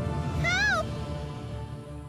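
A woman's single high-pitched distressed cry, rising then falling, over a sustained dramatic music underscore that fades toward the end.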